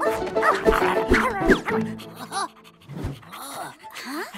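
Cartoon pug puppy yipping and barking excitedly over background music, with a few thuds, in the first half. The music then fades out and the sounds turn quieter and sparser.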